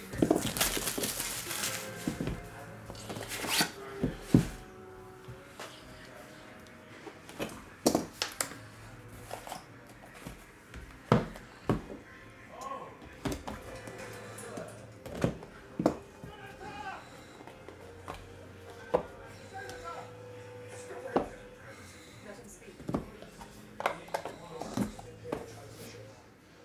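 Hands opening a sealed cardboard trading-card hobby box: a burst of rustling about a second in, then scattered taps, clicks and knocks of cardboard as the box and the inner pack box are handled and opened.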